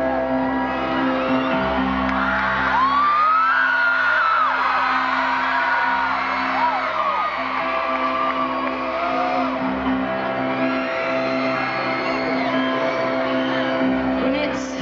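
Sustained keyboard chords held steadily under a cheering stadium crowd, with whoops and screams that are loudest a few seconds in.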